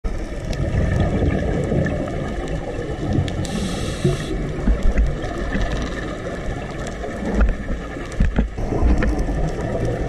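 Underwater sound heard through a camera housing: a scuba diver's regulator breathing and exhaled bubbles gurgling over a steady low rumble, with a brief hiss about three and a half seconds in.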